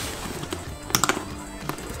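A few light clicks and taps, the sharpest about a second in, as a cardboard graham cracker box is handled and opened, over quiet background music.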